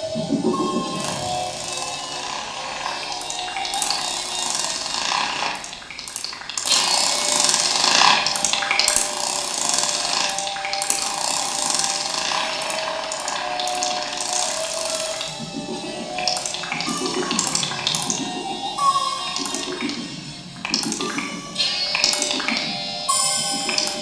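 Experimental electro-acoustic improvisation: a dense, shifting wash of processed noise and hiss with a few held pitched tones. It swells louder and hissier about seven seconds in, and the second half turns to broken, stuttering low pulses.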